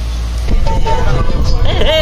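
Coach bus running, its engine rumble heard inside the cabin. About half a second in the rumble turns rougher and a steady held tone joins it, and voices come in near the end.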